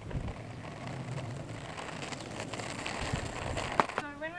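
Plastic penny board wheels rolling over rough asphalt, a continuous gritty rumble that grows a little louder, with a single sharp clack near the end.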